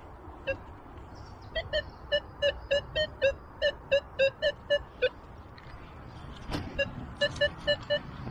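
Minelab Multi-IQ metal detector sounding a repeated low-pitched beep, about three or four a second, as the coil sweeps back and forth over a target: a low-conductive signal. A single knock comes about six and a half seconds in, then the beeping starts again near the end.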